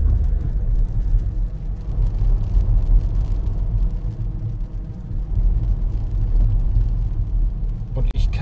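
Car driving on a wet road, heard from inside the cabin: a steady low rumble of engine and tyres.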